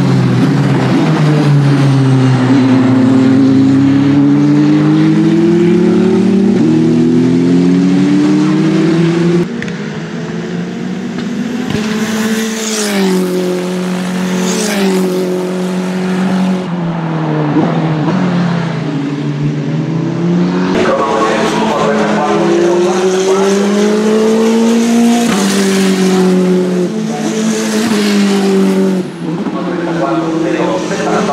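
Tatuus T-318 Formula 3 race cars with turbocharged four-cylinder engines running at speed through a corner. The engine pitch slides down under braking, then climbs again as they accelerate, with stepped jumps in pitch at the gearshifts.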